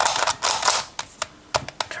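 Plastic Pyraminx Crystal twisty puzzle being turned by hand: a quick run of clicking, scraping turns of its faces in the first second, then a few separate clicks.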